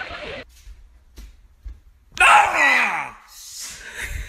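A person's loud cry about two seconds in, its pitch sliding steeply down, after a quieter stretch with a few faint clicks.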